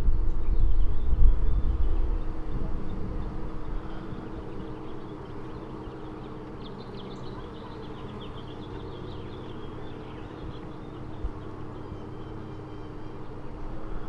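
Honeybee colony on an open brood frame humming steadily at one pitch. A low rumble is heard in the first few seconds and fades out.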